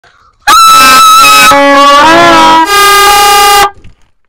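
Several plastic toy trumpets blown together in a loud, blaring clash of horn notes. The notes shift a couple of times, dip briefly, and cut off suddenly after about three seconds.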